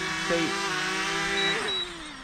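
DJI Mavic Mini's four small propellers giving a steady whine made of several stacked tones as the drone descends into a hand to land. Near the end the pitch slides lower and the sound fades as it is caught.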